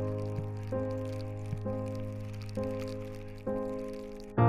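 Background music: a sustained chord struck again about once a second, each strike fading away.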